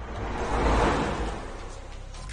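A whoosh transition sound effect: a rushing noise swell that builds to a peak about a second in and fades away, over a low rumble.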